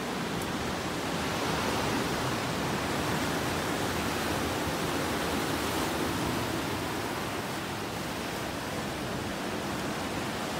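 Steady wash of ocean surf, rising and falling slightly in level.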